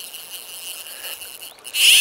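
Fly reel's drag buzzing in a short, loud, high-pitched run near the end as a hooked trout pulls line off, over faint river noise.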